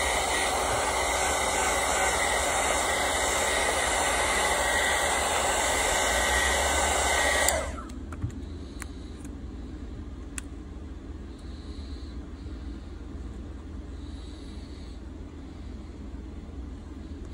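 Hand-held hot-air heat gun blowing steadily, warming the adhesive under a phone's back glass, then switched off suddenly about halfway through. A few faint clicks follow as a metal pry pick works along the glass edge.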